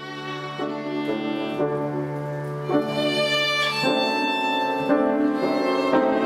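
Solo violin playing a slow melody, its notes changing about once a second, over a low note held underneath for the first few seconds.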